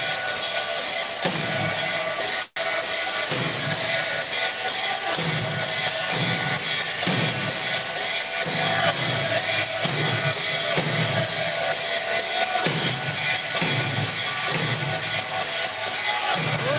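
Temple aarti percussion: a drum beating a steady slow rhythm, a little under one beat a second, under continuous ringing of bells and cymbals. The sound drops out for a split second about two and a half seconds in.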